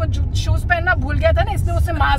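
A woman talking inside a car cabin, over a steady low rumble of road and engine noise.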